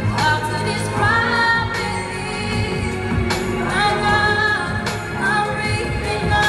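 A woman singing a pop ballad solo into a handheld microphone over an instrumental backing. She holds long notes, several of them sliding up in pitch as a phrase begins.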